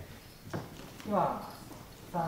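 A short falling voice sound in a hall, preceded by two sharp clicks about half a second apart.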